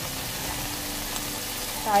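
Ground-meat sauce sizzling steadily in a frying pan on the stove, with a voice starting right at the end.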